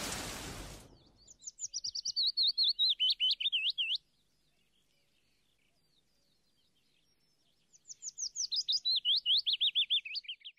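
Rain fades out in the first second. Then a songbird sings two phrases of rapid, quickly repeated down-slurred chirps, each phrase sliding lower in pitch over about three seconds, with a few quiet seconds between the phrases.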